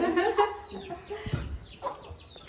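A hen clucking, loudest in the first half-second, with small birds chirping faintly.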